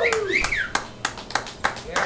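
A small audience clapping and cheering as the song ends, with scattered individual claps and a few whoops in the first half second.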